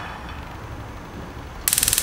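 Gas stove's electric spark igniter clicking rapidly for about half a second near the end as the burner is lit.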